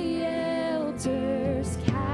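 A woman singing a slow worship song into a microphone, holding long notes over soft instrumental accompaniment. The line is 'all the elders cast their crowns'.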